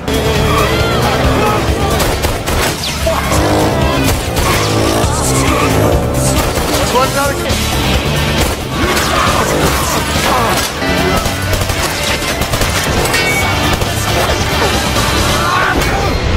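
Action-film chase soundtrack: motorcycle engines revving up and down, with tyre squeals, over a loud music score.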